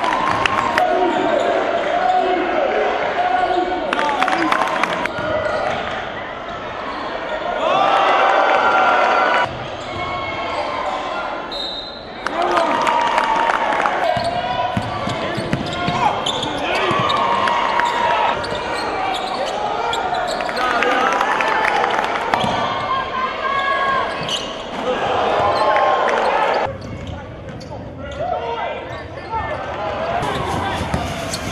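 Basketball game sound in a gym: crowd voices and noise with basketballs bouncing on the court, changing abruptly several times as the footage cuts between games.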